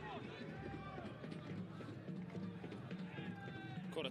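Football stadium ambience on a match broadcast: scattered faint voices and shouts from the pitch or stands over a steady low hum.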